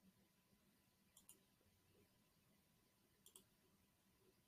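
Near silence with two faint double clicks, one about a second in and another after about three seconds.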